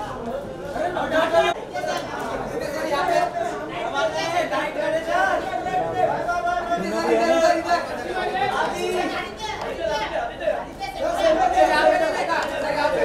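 Many voices talking over one another: crowd chatter in a large hall.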